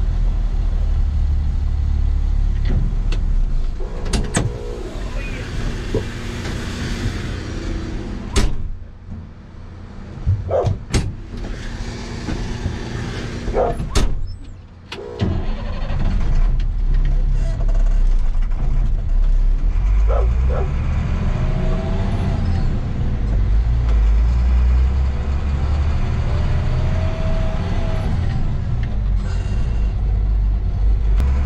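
Work truck's engine and road noise heard from inside the cab while driving: a steady low rumble that drops quieter for a few seconds partway through, then picks up again with a rising whine as the truck gathers speed. A few sharp knocks come through the cab.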